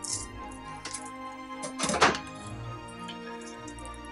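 Soft background music with steady held tones. About two seconds in comes a brief scraping knock of a fillet knife against a wooden cutting board as the fillet is cut free of the fish, with lighter knife clicks before it.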